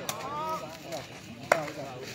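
A single sharp smack of a sepak takraw ball being struck, about one and a half seconds in, with a fainter click at the start.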